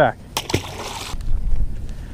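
A small bass splashing into the lake after being tossed back, a short sharp splash with a hiss of spray lasting under a second. After it comes a low rumble of wind on the microphone.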